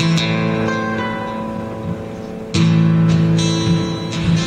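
Acoustic and electric guitars playing sustained chords, with a louder strummed chord coming in suddenly about two and a half seconds in.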